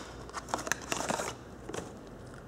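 Small cardboard product box being opened and a glass spray bottle slid out of it: rustling and scraping of paperboard with a few light clicks, busiest in the first second or so.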